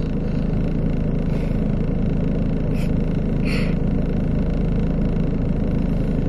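Steady low rumble of a car's engine running, heard from inside the cabin.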